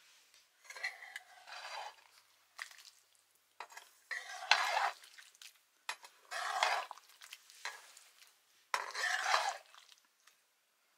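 A wooden spoon stirs a wet curry in a metal kadhai, scraping against the pan in four bursts a couple of seconds apart, with a few clicks of the spoon against the rim.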